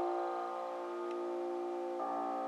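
Grand piano: a chord held and slowly fading, part of a classical piano piece, with new notes struck right at the end.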